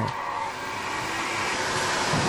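Steady whirring hum of production machinery in an airbag factory, with a faint steady tone over an even hiss.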